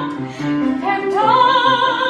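A woman singing in a classical, musical-theatre style to electronic keyboard accompaniment: after a short break her voice glides upward about a second in and holds a note with vibrato, over steady keyboard notes.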